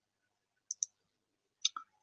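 Near silence from a noise-gated video-call line, broken by two quick, short clicks a little under a second in and another short click just before the speaking resumes.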